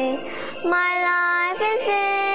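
A young girl singing a slow gospel song: after a short breath she holds a long sustained note, with a brief bend in pitch near the end before settling on the next held note.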